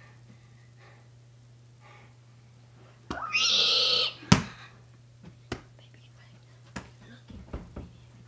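A short, loud cry lasting about a second, then a single sharp thud from the thrown football, the loudest sound, followed by a few light knocks of footsteps and handling, over a steady low hum.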